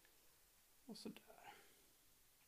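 Near silence, broken about a second in by a man softly murmuring one short word, with a faint click or two.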